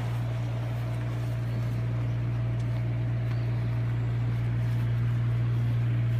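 A steady low mechanical hum with a faint higher tone above it, like a motor running at a constant speed.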